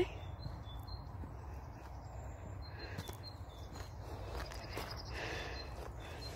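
Quiet outdoor ambience: a steady low rumble on the microphone with a few short, faint bird chirps scattered through.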